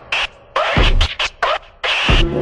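Turntable scratching: a record pushed back and forth and cut into short bursts that sweep up and down in pitch, with brief gaps between cuts. A low thump lands about three quarters of a second in.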